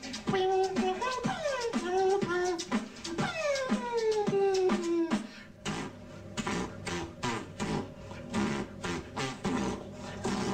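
Human beatbox: a voice makes falling, gliding tones over mouth-made percussion for about the first half, then switches to a fast run of sharp clicks and snare-like hits with no melody.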